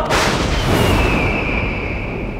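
Dramatic sound-effect hit of a TV drama score: a sudden boom, followed by a high ringing tone that slides slightly down in pitch.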